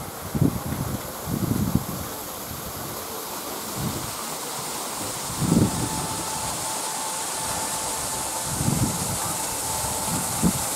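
Wind buffeting the camera's microphone in irregular gusts over a steady outdoor hiss. A faint steady tone joins in the second half.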